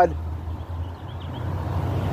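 Low, steady rumble of a car engine, growing slightly louder near the end.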